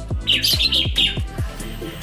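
Background music with a steady, slow drum beat. Over it, a bird chirps a quick run of high notes for just under a second, starting about a quarter second in.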